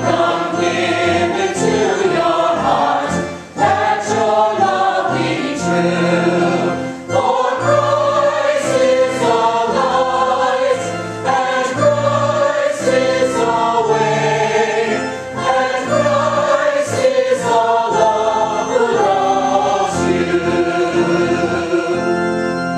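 Church choir singing a hymn in phrases with short breaths between, over steady held low accompanying notes.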